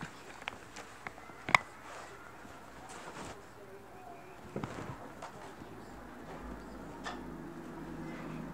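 Quiet room with soft rustling and a few small clicks from a hand-held phone moving over a fleece blanket, one sharp click about a second and a half in. A faint low hum comes in near the end.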